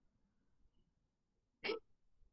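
Near silence, then a single short vocal sound from a person near the end.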